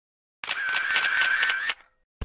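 Camera shutter firing in a rapid burst, about eight clicks a second for just over a second, over a thin steady high whine; it starts suddenly and stops sharply.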